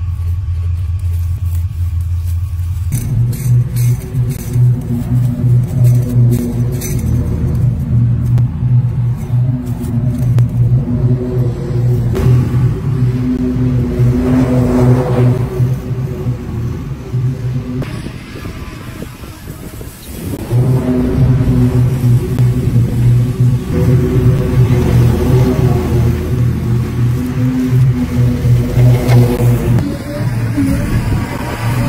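Bad Boy zero-turn riding mower's engine running steadily under load as it mows, its drone changing character about three seconds in and dipping briefly around two-thirds of the way through before picking back up.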